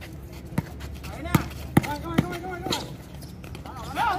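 A basketball being dribbled on a hard court: about five sharp bounces, roughly half a second apart, over faint players' voices.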